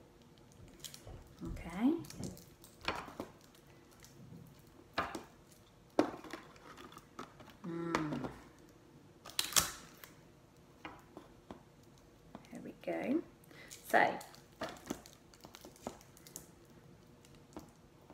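Kitchen foil crinkling and sellotape being pulled off and pressed on as a foil ball is taped to a string: scattered short rustles and sharp tearing sounds, the loudest about halfway through. A few brief murmurs from a woman's voice in between.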